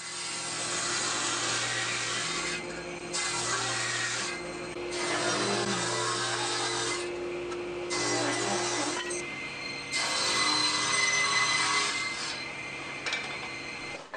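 Table saw running steadily while wood is ripped along the fence: the cutting noise swells and drops over about five passes, with the motor and blade whine carrying on between them.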